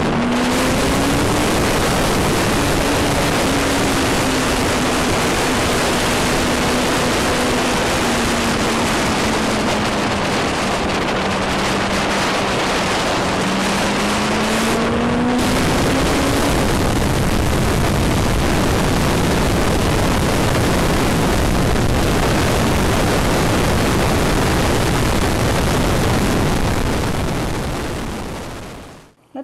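Steady wind rush on the microphone while riding a Honda CBR600RR sport bike, with the engine note faintly underneath. The engine note dips slowly and then climbs again about halfway through.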